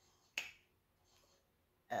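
A single short, sharp click about a third of a second in, followed by near silence.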